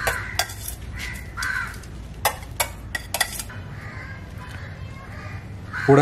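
Sharp clinks of a metal spoon against metal cookware, a few near the start and a quick cluster of four about two to three seconds in.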